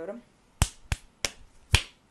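Four sharp slaps of a fist striking an open palm, spaced unevenly over about a second: the hand-pumping count before a rock-paper-scissors throw.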